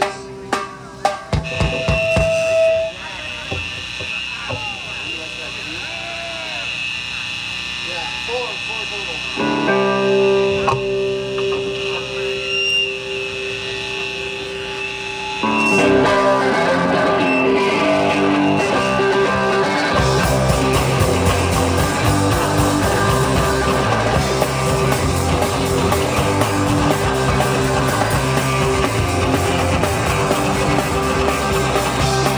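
Live rock band of electric guitars and drum kit starting a song: sparse guitar notes at first, sustained guitar chords coming in about a third of the way through, and drums and low end joining about two-thirds in, the full band then playing loud.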